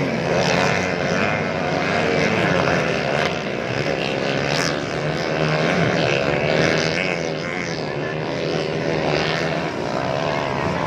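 A pack of motocross motorcycles racing round a dirt track. Their many engines overlap, each rising and falling in pitch as the riders rev and shift.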